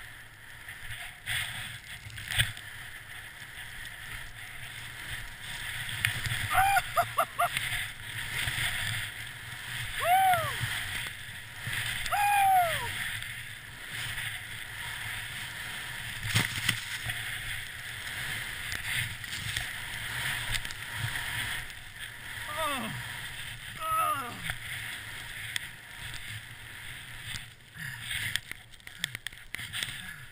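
Skis hissing through deep powder with wind rushing over a body-worn action camera's microphone. A few short whoops from the skier rise and fall in pitch over the noise, one of them a quick string of yelps.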